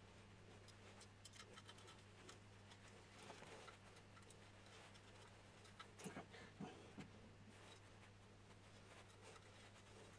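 Near silence: a steady low hum with faint, scattered ticks and clicks of small printer parts being handled and screwed together with a small screwdriver, a few slightly louder clicks a little past the middle.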